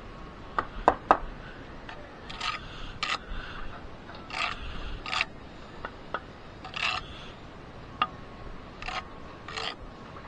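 Bricklaying hand tools, a steel trowel and jointer, scraping and tapping against brick and fresh mortar: a few sharp taps about a second in, then short scraping strokes every second or so.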